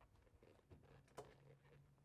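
Near silence, with a single faint click a little past a second in.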